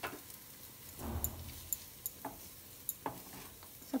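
A wooden spatula scraping and tapping in a steel kadhai as a cooked potato masala filling is stirred: a few separate scrapes and knocks, the longest and loudest scrape about a second in.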